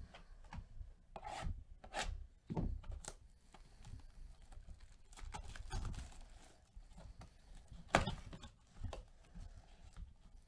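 Gloved hands rubbing, scraping and rustling against a cardboard trading-card box as it is handled and worked open, in irregular scratchy strokes. One sharper scrape stands out about eight seconds in.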